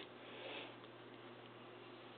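Faint, soft swish of a thick photo album page being turned by hand, slightly louder about half a second in.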